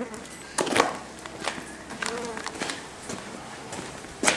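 Footsteps on a concrete floor: a handful of separate scuffs and knocks.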